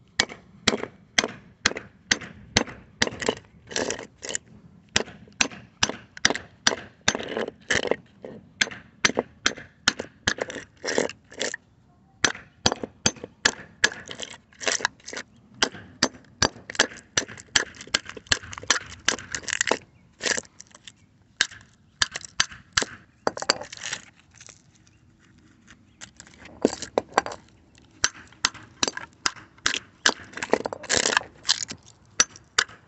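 Rapid, repeated hammer blows on a microwave oven transformer's laminated steel core, about two to three strikes a second, knocking it apart to free the iron from the copper windings. The blows stop for a couple of seconds about three-quarters of the way through, then resume.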